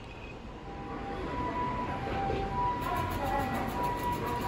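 Split-flap (Solari-type) departure indicator flipping its flaps, a rapid run of clicks starting about three seconds in as the board changes its display. Train sounds and steady high tones carry on underneath.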